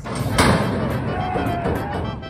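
Metal starting-gate doors bang open about half a second in, loudly, and racehorses break out and gallop away on the dirt track, with a person shouting.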